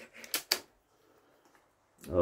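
A few short, sharp clicks close together, about a third to half a second in: a handling noise.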